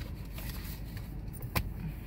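Steady low rumble inside a car's cabin, with a single sharp click about one and a half seconds in.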